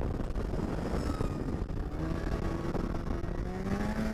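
Polaris SKS 700 snowmobile's two-stroke twin engine running steadily under way along a trail, with the engine pitch rising in the last second or so as it picks up speed.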